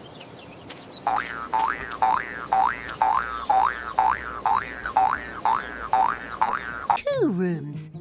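A cartoon 'boing' sound effect repeated about twice a second for several seconds, each one a quick upward-sweeping springy tone, over light background music. Near the end it gives way to a falling glide and a voice.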